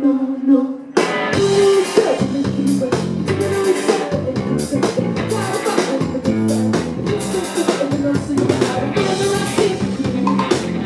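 Live pop-rock band playing: drum kit, electric bass and guitars, with a sung line over them. The band drops almost to a single held note for a moment, then comes back in full about a second in and plays on with a steady drum beat.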